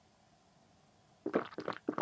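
Rapid gulping of red wine from a wine glass, about five swallows a second, starting about a second in after faint room tone.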